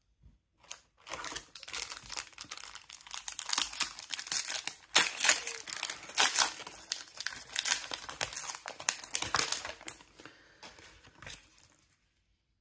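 Crinkly plastic wrapper of a Topps Match Attax trading card pack being torn open by hand, a loud, dense crackle with sharp tearing spikes, then quieter rustling near the end as the cards are slid out.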